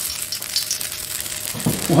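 Saqsaqa shawarma sauce (ghee, tomato and pepper paste, water) sizzling steadily in a hot pan on a gas ring as a flatbread soaked in it is lifted out.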